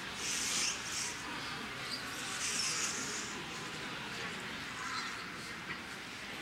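Rustling of cloth as wrap-around trousers are pulled on and wrapped, in two brief bursts, over a steady background hum of a large hall.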